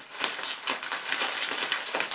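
Plastic bubble wrap crinkling and crackling as it is pulled and unwrapped by hand, in irregular quick crackles.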